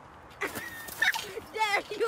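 A person coming off a playground swing and landing on wood-chip mulch with a short thud, followed by several high-pitched, wavering yelps and squeals.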